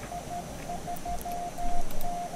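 Morse code (CW) signal: a single tone keyed on and off in short dits and longer dahs.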